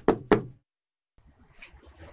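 Rhythmic percussion music of rapid knocks, about six a second, that cuts off suddenly about half a second in, followed by a short silence and faint background noise.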